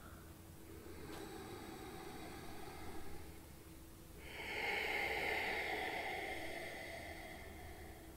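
A woman breathing audibly in time with slow yoga movements: a faint in-breath in the first seconds, then a longer, louder out-breath from about four seconds in.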